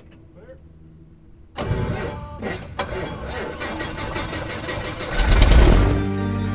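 A Pitts S-2C's six-cylinder Lycoming aircraft engine being started: it kicks in suddenly with a rapid, regular pulsing and swells to a loud, deep burst near the end as it fires up.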